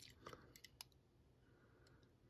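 Near silence: room tone with a few faint clicks in the first second.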